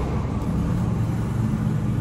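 Road traffic: motorbike engines passing, a steady low rumble.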